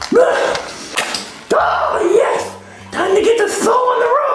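A high-pitched cartoon character voice talking in short rising and falling phrases, with a few sharp clicks between them.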